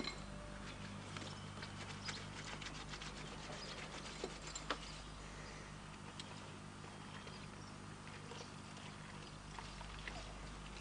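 A faint steady low hum with light clicks and taps scattered through it.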